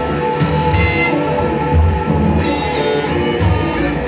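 Live band music played loud and without a break, with guitar and drums over a pulsing low beat and falling high-pitched glides.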